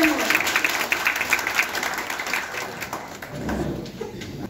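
Audience applause with many hands clapping, dying away about three seconds in.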